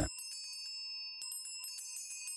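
Quiet background music of held, ringing bell tones with a light tinkling over them.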